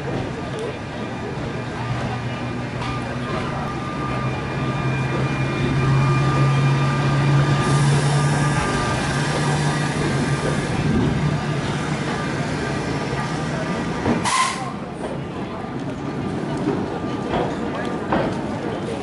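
Vintage electric tram cars passing on rails: a steady low motor hum with rail noise that builds, is loudest about six to ten seconds in, then fades. A short sharp sound stands out about fourteen seconds in, over the voices of people around.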